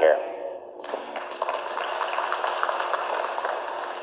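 Audience applauding: a steady crackle of clapping that starts about a second in.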